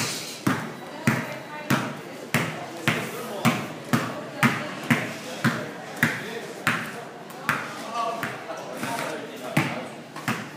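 A basketball being dribbled on an indoor court: sharp, steady bounces about two a second, each with a short echo from the hall, with a pause of about a second and a half near the end.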